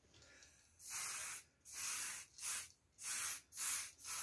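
Aerosol spray paint can hissing in five short bursts, starting about a second in.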